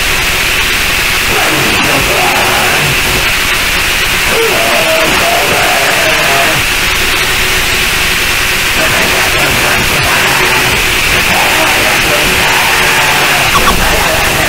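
Harsh noise music: a loud, unbroken wall of distorted static and hiss, with a steady low tone and wavering higher tones underneath.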